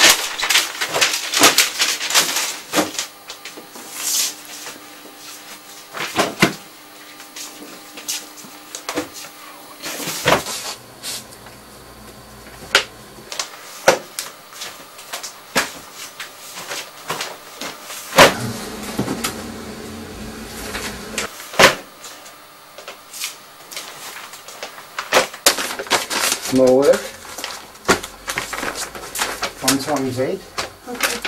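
Newspapers being handled and sorted by hand: repeated sharp rustles, slaps and thuds of paper and paper bundles. A short bit of speech comes near the end.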